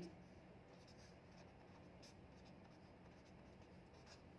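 Faint scratching of a pen writing figures on paper, in short strokes, over a low steady room hum.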